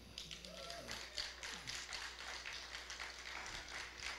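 Faint, irregular light taps, with a faint murmuring voice during the first couple of seconds.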